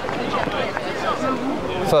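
Faint, distant shouts and chatter from players and onlookers at a rugby league match, over a steady outdoor background noise.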